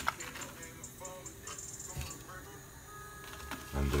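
Faint background music with short scattered tones, and one sharp click just after the start.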